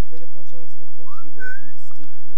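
A single short whistle about a second in, gliding upward and then holding its pitch briefly, over faint low talk.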